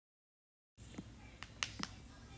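Four sharp, short clicks within about a second, over a faint low hum that comes in after three-quarters of a second of silence.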